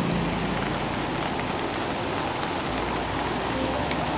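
Steady hiss of roadside outdoor background noise, even and unbroken, with no distinct events standing out.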